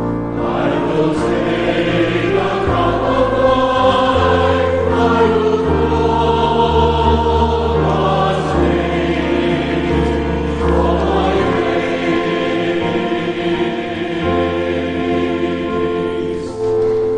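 Congregation singing the responsorial psalm refrain together, led by a cantor, over sustained keyboard accompaniment.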